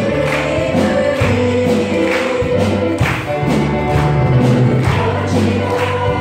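A women's choir singing a gospel praise song together over an accompaniment with a steady beat of about two strokes a second.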